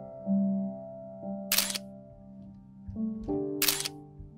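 A camera shutter clicks twice, about a second and a half in and again near the end, over slow background music of held keyboard notes.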